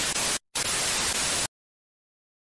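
TV-static glitch sound effect: hiss in two bursts with a short break just before the half-second mark, the second burst cutting off suddenly about a second and a half in.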